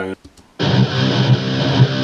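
Heavily distorted electric guitar from an ESP EC1000 with EMG active pickups and thick-gauge strings, played through a 5150 amp model: a dense, sustained chord that starts about half a second in and rings on to the end, showing off the thick, rich tone the heavy strings give.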